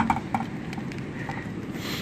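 Low, steady outdoor background noise on the microphone, with a sharp click at the very start and a few small clicks just after.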